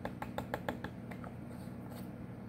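A quick, even run of light taps or clicks, about six a second, that stops a little over a second in.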